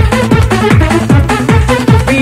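Electronic dance music from a club DJ session recorded on cassette: a steady kick drum beat under a repeating, stepping synth bass and chord pattern.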